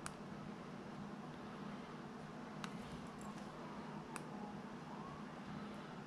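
Quiet room tone: a faint steady hum with a few small clicks, about three in all, and a faint wavering tone in the middle.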